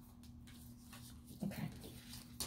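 Faint rustles and light taps of tarot cards being handled and laid on a tabletop, over a low steady hum.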